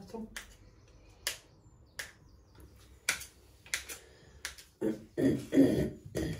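Sharp, irregular clicks of a kitchen knife striking a small dish as butter is cut into pieces.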